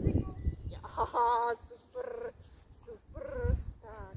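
Three short, high-pitched voice calls: the loudest about a second in, another at two seconds, and one near three and a half seconds. They sound over an uneven low rumble.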